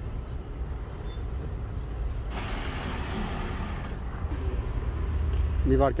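Street traffic noise: a steady low rumble of vehicle engines, with a hiss lasting over a second about two and a half seconds in.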